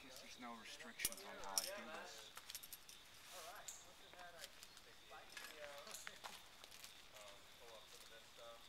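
Faint background voices, with a few sharp metallic clinks in the first two seconds from climbing hardware on the climber's harness.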